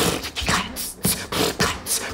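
A man beatboxing a quick run of hissing and clicking mouth-percussion hits, imitating electronic dance music ('pıs pıs pıs pıs').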